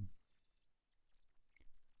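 Near silence: room tone in a pause of speech, with one faint click shortly before the end.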